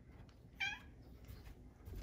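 House cat giving one short, high meow about half a second in, dropping in pitch at the end.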